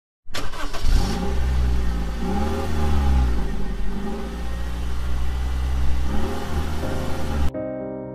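A car engine running and revving, its pitch rising and falling several times over a deep steady rumble. It cuts off abruptly near the end, when piano music begins.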